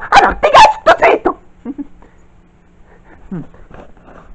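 High-pitched, whiny vocal sounds, loud for about a second and a half and then stopping, followed by quiet with a faint hum.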